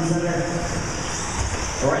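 Radio-controlled short-course race trucks running on an indoor track, a steady whir and hiss of motors and tyres. The announcer's voice comes in briefly at the start and again at the end.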